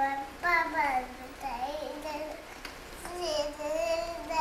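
A toddler's high voice in wordless sing-song: a few drawn-out notes that slide down and waver, with a longer held note about three seconds in.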